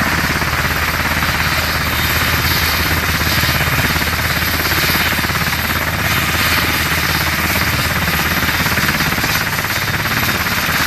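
A UH-60 Black Hawk's twin turboshaft engines running on the ground with the main rotor turning: a loud, steady, rapid rotor beat over an unchanging turbine whine.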